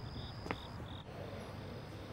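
Crickets chirping in an even, pulsing rhythm, with one short click about half a second in. The chirping stops abruptly about a second in, leaving only faint room hiss.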